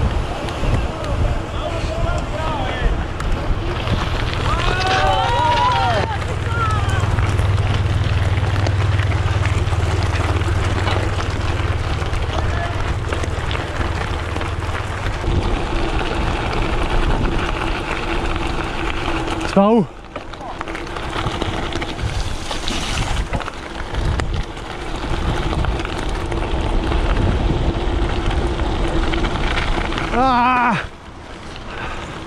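Wind buffeting the microphone and tyres rolling as a gravel bike is ridden at speed, first on tarmac, then on a gravel track. Brief voices are heard a few seconds in.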